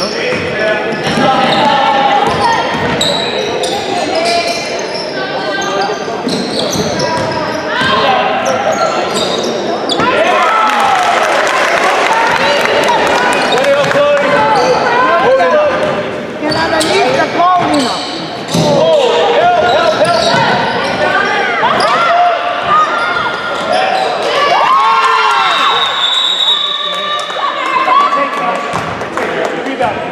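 Basketball bouncing on a hardwood gym floor during play, with players and spectators calling out indistinctly, all echoing in the large hall.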